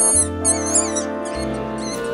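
A days-old mink kit squeaking in high, wavering calls, about four short squeaks in a row while it is syringe-fed, over background music with held chords.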